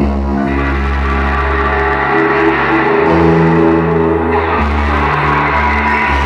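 A live band playing loud music: sustained, droning synthesizer chords with electric guitar over held low bass notes that change every second or two.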